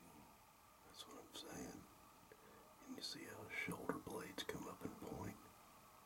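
Faint whispered speech in two short stretches, about a second in and again from about three seconds in, over a quiet background.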